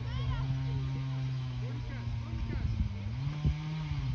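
A steady low motor-like hum, stepping up in pitch about three seconds in, under faint distant shouting of players on a football pitch.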